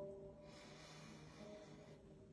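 A man's long breath in, faint, starting about half a second in, with faint background music underneath.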